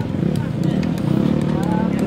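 Dirt bike engines running, a steady low drone, mixed with a person's voice.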